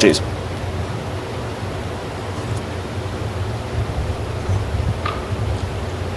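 Room tone of a lecture hall: a steady low hum with an even faint hiss, no distinct events.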